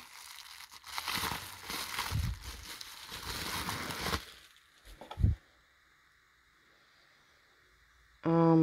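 Plastic bubble wrap crinkling and crackling as it is pulled off a ceramic bowl, for about four seconds. A couple of short thumps follow about five seconds in.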